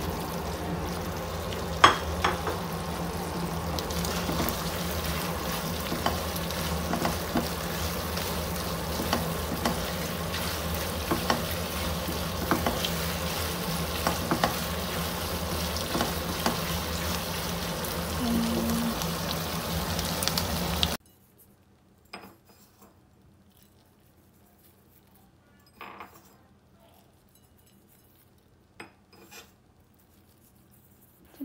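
Sweet and sour sauce sizzling and bubbling in a frying pan as fried chicken pieces are tipped in and stirred with a silicone spatula. Scattered clicks and scrapes come from the spatula and pan, the sharpest about two seconds in. The sizzle cuts off suddenly about two-thirds of the way through, leaving near quiet with a few faint taps.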